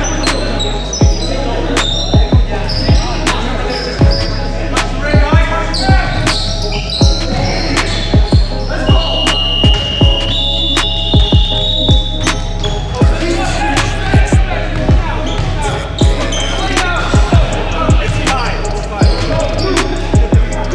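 A basketball bouncing on a hardwood gym floor in a steady run of sharp thumps, about one or two a second, as players dribble through a game. Short high sneaker squeaks and players' voices come in between the bounces.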